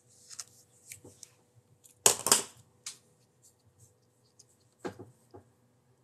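Hands handling small tools and objects on a workbench: a run of light clicks and rustles. The loudest is a short rattle about two seconds in, and a sharp knock comes near the five-second mark.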